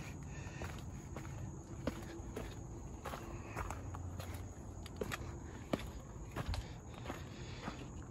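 Footsteps on a gravel path at an irregular walking pace, with a sharp click now and then.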